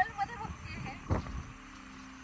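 Wind buffeting the microphone, a low rumble that surges about a second in, with a woman's voice briefly at the start.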